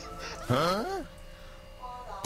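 A short voice-like cry about half a second in, rising and then falling in pitch and lasting about half a second, followed by a quieter stretch.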